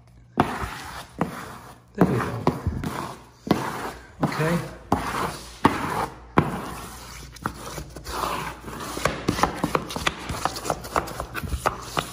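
A plastic wallpaper smoother rubbing over pasted natural veneer wallcovering, worked up and down along a fresh double-cut seam, with frequent short knocks and taps as the tool and hand handle the paper.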